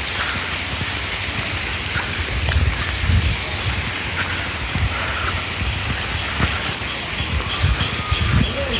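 Steady hiss of light rain falling on the foliage, with irregular low buffeting on the phone's microphone and a few faint bird chirps.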